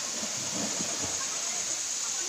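Steady rush of a waterfall pouring into a pool, with faint voices early on.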